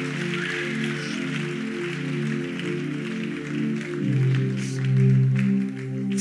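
Background music: slow, sustained keyboard chords, with a deeper bass note coming in about four seconds in.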